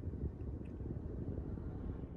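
Low, steady rumble of car cabin noise with nothing else standing out.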